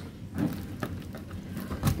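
A few light knocks and scrapes from a taped cardboard box being handled.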